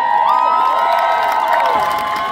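Large concert crowd cheering just after the music stops, with many voices holding long high shouts that overlap and glide.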